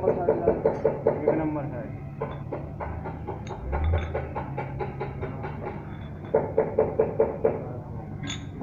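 People talking, indistinct, over a low steady hum.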